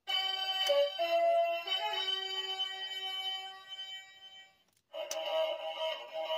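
Legacy Dragon Dagger toy's speaker playing its electronic flute sounds with the mouthpiece pushed in: a short run of notes that stops on its own about four and a half seconds in, then a second held note starting a moment later. The sound now cuts off properly, with fresh batteries fitted.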